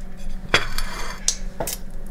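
Three short clinks of cutlery and dishes against a ceramic plate, over a steady low hum.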